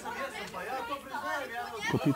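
Several people talking over one another in an indistinct group chatter.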